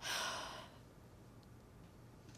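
A woman's breathy sigh, an exhale that fades out within the first second, followed by quiet room tone.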